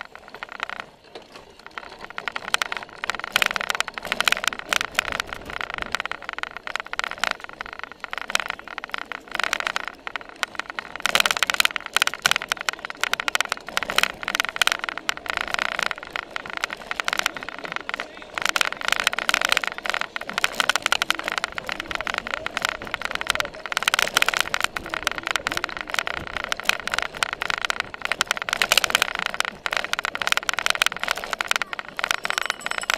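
Continuous jolting rattle and knocking of a cyclocross bike and its saddle-mounted camera riding fast over bumpy grass, briefly quieter about a second in.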